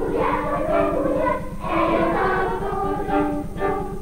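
Children's choir singing, accompanied by a violin, with a low steady hum underneath.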